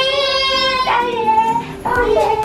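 A child singing a long held note, then a second shorter note, over background music.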